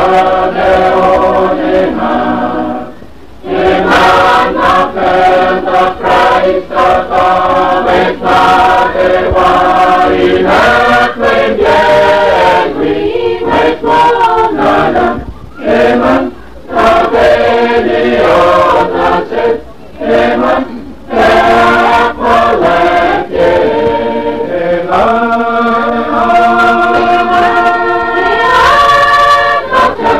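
A choir singing a hymn in Kosraean in four-part harmony (soprano, alto, tenor, bass), with short breaks between phrases about 3, 16 and 20 seconds in.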